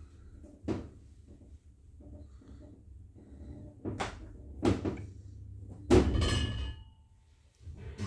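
Passenger lift car: several knocks and thuds over a low steady hum. The loudest comes about six seconds in and is followed by a short ringing.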